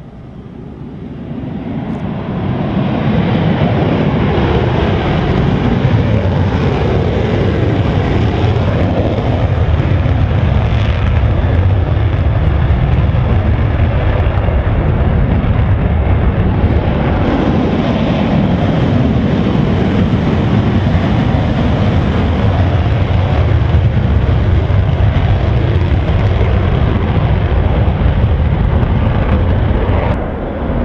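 F-16 Fighting Falcon jet engine at high power during a takeoff: loud, steady jet noise that builds over the first three seconds and then holds level.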